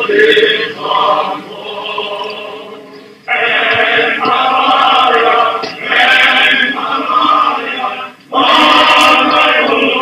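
Choir of men's voices singing a slow hymn-like tune in long, held phrases, with short breaks between phrases about three and eight seconds in.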